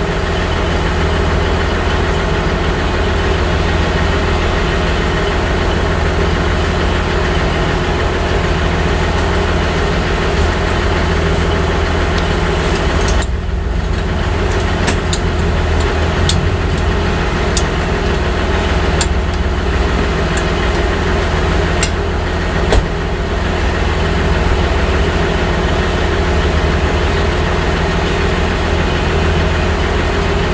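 Heavy truck's diesel engine idling steadily, with a few light clicks of hand tools in the middle stretch.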